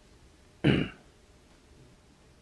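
A man clearing his throat once, a short sharp burst just after a half-second in, against faint room tone.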